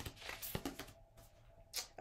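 Tarot cards being handled as a card is drawn from the deck: a few soft clicks and rustles of card stock.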